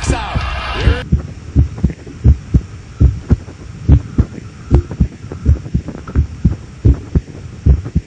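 Rock music cuts off abruptly about a second in and gives way to a heartbeat-like thumping: repeated low, dull beats, about three a second, with little else over them.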